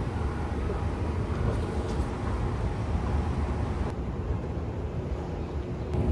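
Escalator running: a steady low mechanical hum and rumble with faint held tones.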